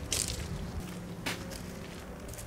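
Footsteps crunching on gravel, two steps about a second apart, over a faint steady background.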